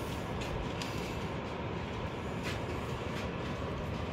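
Steady low rumble with a few faint clicks.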